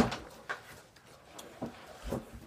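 A sharp knock, then a few fainter knocks and bumps, as of things being handled and set down.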